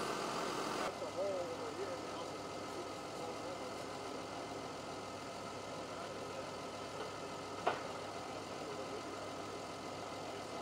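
A heavy machine's engine idling steadily. Faint voices can be heard in the first couple of seconds, and a single sharp click comes near three-quarters of the way through.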